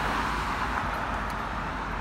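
Steady road traffic noise: cars driving by with an even hiss of tyres on the road.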